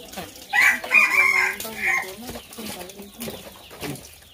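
A rooster crowing once, starting about half a second in and lasting about a second and a half.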